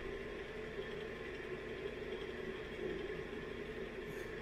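Steady, even background hum with a constant drone and no distinct strokes or clicks, like a fan or appliance running in the room.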